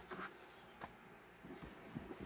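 Faint handling noises: a clear plastic storage case pushed aside with a light bump near the start, a short click a little before the middle, then soft scraping near the end as a cardboard box is handled.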